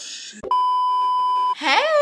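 A steady electronic beep lasting about a second, of the kind used as a censor bleep. It starts with a sharp click and stops abruptly.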